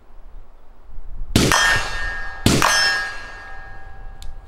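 Two loud metal clangs about a second apart, each ringing out for over a second at the same pitch, the same piece of metal struck twice.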